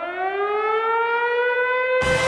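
A siren winding up as the opening effect of a rap track: one tone with overtones rising in pitch and levelling off near the end.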